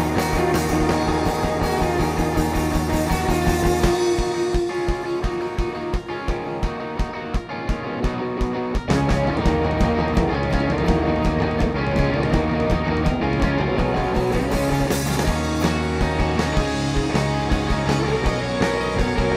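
Live indie rock band playing an instrumental passage on electric guitars, bass and drum kit. About four seconds in the low end drops away, leaving guitar over a steady drum beat, and the full band crashes back in about nine seconds in.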